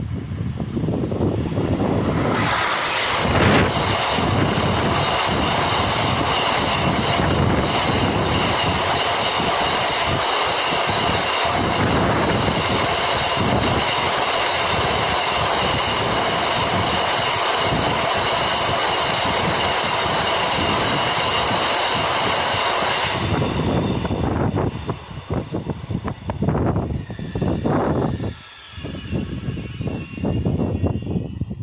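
Freight train of open box wagons behind an electric locomotive passing close by: a loud, dense rush of wheels clattering over the rail joints, with a steady high whine over it. The passing noise cuts off abruptly in the last quarter, leaving a quieter, uneven rumble.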